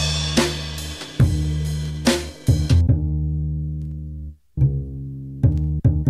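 Background music with a drum beat over bass. About halfway through, the drums stop, a held low chord fades away to a brief gap, and the beat comes back in near the end.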